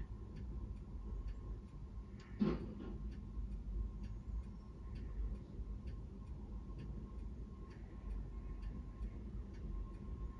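Faint, steady, regular ticking from an iPhone while a speed test runs under VoiceOver, with a faint steady high tone beneath it. One brief louder sound about two and a half seconds in.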